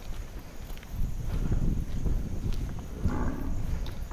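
A cow mooing, a short low call about three seconds in, over a low rumbling background.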